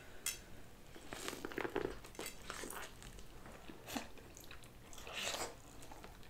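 Close-miked eating sounds: quiet chewing and bites into corn on the cob, with scattered short clicks and crackles.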